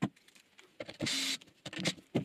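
A drill driver whirs for about half a second, around a second in, driving a screw through a concealed hinge's plate into MDF, with light clicks and knocks around it. Screwing the plate down this way pulls the hinge out of square.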